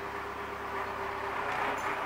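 Steady low background noise with a faint constant hum; no distinct sounds stand out.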